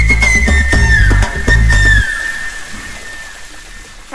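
Background music: a high, whistle-like held note over a heavy bass beat with sharp percussive hits. The beat stops about two seconds in, the high note glides down and fades, and the music dies away.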